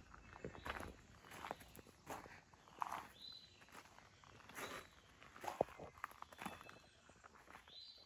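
Faint, irregular footsteps of a person walking through weeds and over rough ground.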